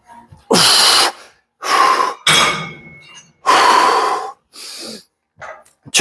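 A man breathing hard through cable chest-fly reps: four loud, forceful breaths, heard close on a clip-on microphone.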